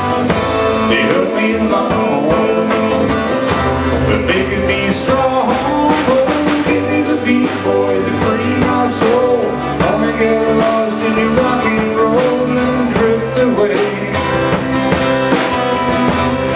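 Live band music: a country-rock song played on acoustic guitar and drums, with a melodic passage and no singing.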